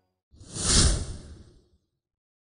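A single whoosh transition sound effect: a rush of noise that swells and fades away over about a second.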